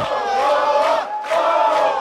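A group of people shouting together at a celebration, in two long held cheers.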